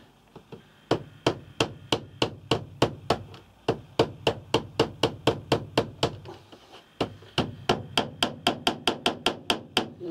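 Small hammer tapping tacks through a strip of trim into a wooden wall, a steady run of light, sharp taps about three a second. There is a short pause about seven seconds in, then quicker taps.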